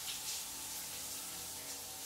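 A shower running steadily: an even hiss of spraying water, with a faint low drone beneath.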